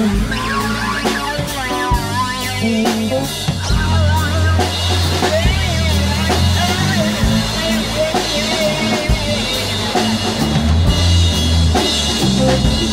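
Band music with no singing: drum kit and bass guitar, with electric guitar, under a wavering, gliding lead line from a theremin.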